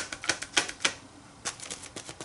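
Paint sponge dabbed repeatedly onto an art-journal page: a run of light, irregular taps, with a short pause a little after the first second.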